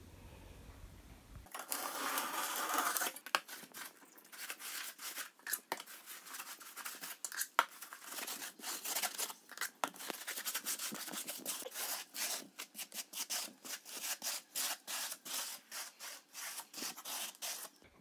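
A trowel scraping and spreading grey mortar over a polystyrene foam insulation board, a long run of irregular rough strokes, several a second.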